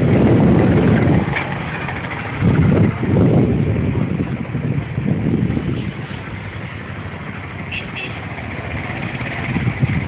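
Wind buffeting the phone's microphone in uneven gusts, a low rumble that swells and eases, with a few faint short high chirps about a second in and near the end.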